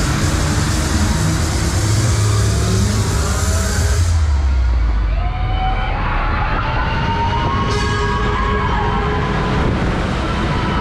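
Loud fairground ride music with heavy bass over a rushing hiss that cuts off suddenly about four seconds in. From about five and a half seconds, gliding siren-like tones sound over the music.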